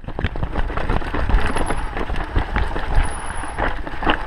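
Mountain bike rattling and clattering as its tyres run fast over a rough dirt trail, with frequent sharp knocks from bumps.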